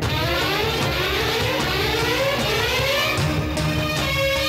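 Film background score: a rising sweep of several parallel pitches climbs steadily for about three seconds over a steady low beat, then gives way to held notes near the end.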